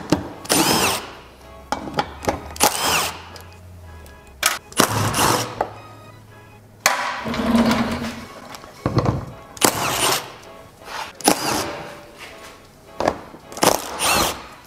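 Cordless power tool spinning out 10 mm bolts from under a bumper in a dozen or so short bursts, each under a second, over background music.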